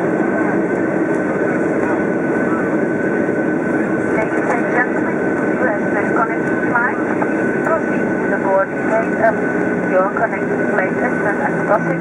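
Boeing 737 cabin noise while taxiing after landing: the jet engines run at a steady low hum with a thin high whine over it. Indistinct voices talk over the engine noise.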